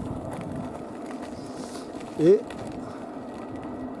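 Steady rolling noise of an electric unicycle ridden along an asphalt lane, with one short spoken word about halfway through.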